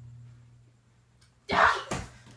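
A person's sudden, loud, harsh breathy vocal burst about a second and a half in, lasting about half a second and ending with a second short hit, after near quiet with a low steady hum.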